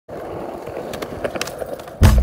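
Skateboard wheels rolling on a concrete skatepark surface: a steady low rumble with a few faint clicks.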